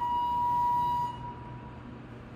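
Elevator hall lantern chime on a Thyssenkrupp Synergy traction elevator: one electronic tone held for about a second, then fading away, signalling the car's arrival at the floor.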